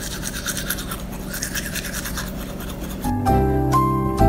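Manual toothbrush scrubbing teeth in quick back-and-forth strokes, several a second. About three seconds in, music starts.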